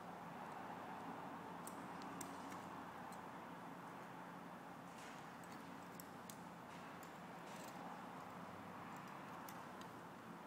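Faint, irregular light clicks and ticks of wire and hand tools being worked, as leader wire is bent and wrapped on a jig, over a low steady hum.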